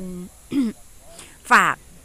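Speech, with a short throat clearing about half a second in.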